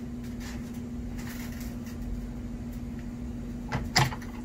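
An electric power tool's motor running with a steady hum, not under heavy load, and two sharp knocks near the end.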